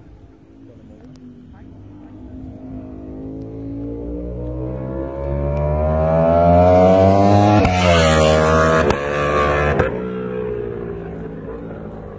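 Ducati Panigale V4 superbike's V4 engine accelerating hard toward the listener, its note climbing steadily in pitch and growing loud. It passes about eight seconds in with a sharp drop in pitch, breaks again near ten seconds, and fades as the bike pulls away.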